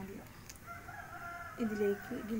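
A rooster crowing in the background: one long, drawn-out call starting about half a second in and lasting over a second.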